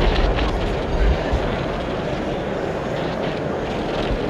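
Steady crowd din of a busy convention hall: many voices talking at once, blurred into an even roar with no single voice standing out.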